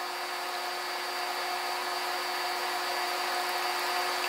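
A small handheld electric mixer motor running steadily with a fixed whine, stirring a cup of epoxy primer mixed with activator and reducer; it grows slightly louder toward the end.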